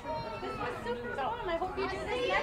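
Chatter of a crowd: several people talking at once, with no single voice clear.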